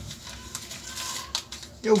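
A small plastic bag of loose components being handled and pulled free: soft rustling and crinkling, with a short click a little after the middle.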